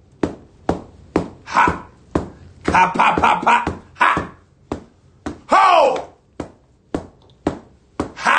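A man's loud wordless cries and exclamations, among them one long cry that rises and falls in pitch about five and a half seconds in, broken up by a string of short, sharp clicks.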